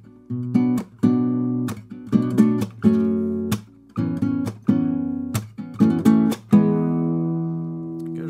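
Acoustic guitar strumming a minor-key chord progression in a clipped rhythm: B minor 7 and F-sharp minor 7 chords, with little pinky hammer-on notes that briefly change the chords. The last chord is left to ring for about the final second and a half.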